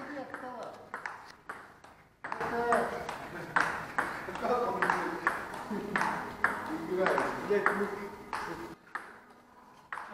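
Table tennis rally: the ball clicks off the bats and the table in a quick, regular run of about two to three hits a second. Voices talk in the background.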